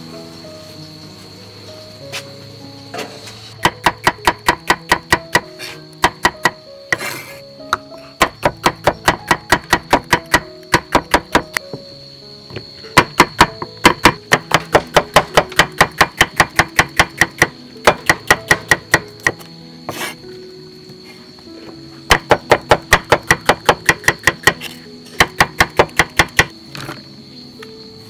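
Knife chopping bitter gourd on a cutting board in quick runs of about four strokes a second, with pauses between the runs, over background music.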